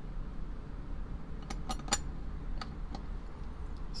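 A few light clicks and taps, clustered around the middle, as a small die-cast toy truck body and its plastic interior piece are handled, over a steady low hum.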